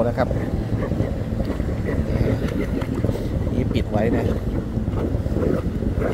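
Wind buffeting the microphone outdoors: a steady low rumble that runs under the talk.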